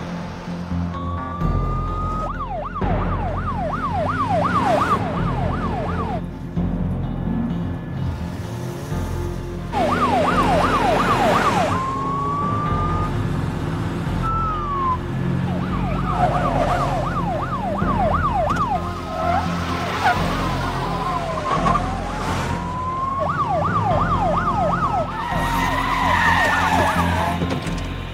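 Police car siren switching back and forth between a slow rising wail and a fast yelp of about three sweeps a second, in four spells of yelping, with at times a second siren sweeping across it.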